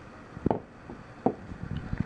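Emerson Roadhouse folding knife's blade clicking against its detent, two sharp clicks less than a second apart, the first the louder, then a few faint ticks near the end.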